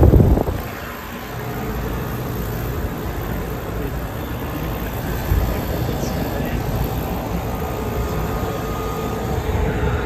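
2014 Thermal Zone split-system air-conditioning condensers running: the condenser fan blowing with a steady hum from the compressor, on units with plugged coils that are frozen up. A brief low thump at the start.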